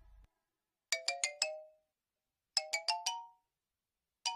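Cartoon chime sound effect: two short rising runs of four quick bell-like notes, the first about a second in and the second about a second and a half later.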